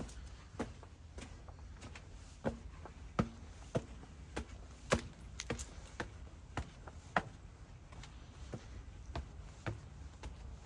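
Footsteps climbing stone stairs: shoe soles striking the stone treads in an even rhythm, a little under two steps a second.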